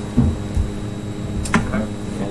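Steady electrical mains hum on the room's microphone feed, with two low thuds early on and a sharp click about one and a half seconds in.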